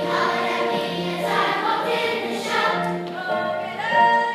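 A large children's chorus singing a song together.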